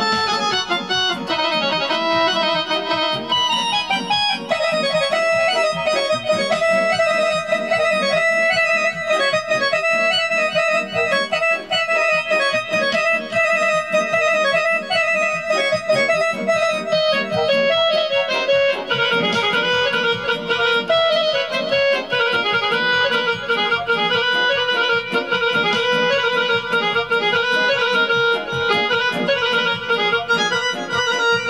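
Portable electronic keyboard played with an accordion-like voice: a fast, busy melody of quickly repeated notes, shifting to a lower main note about nineteen seconds in.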